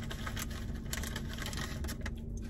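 Close-up chewing and wet mouth sounds, a run of small irregular clicks, over a steady low hum in the car cabin.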